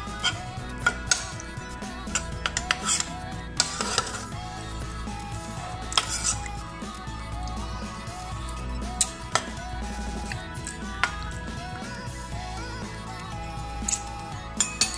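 Background music plays throughout, with sharp, scattered clinks of a utensil against a metal cooking pot, about ten times over the stretch.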